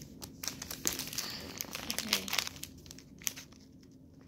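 Foil wrapper of a Pokémon booster pack crinkling and crackling as it is handled and torn, a quick run of small crackles that thins out near the end.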